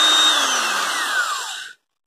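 Hitachi corded electric screwdriver's motor running at speed with a high whine. About half a second in it is released and coasts down, the whine falling steadily in pitch until it cuts out near the end.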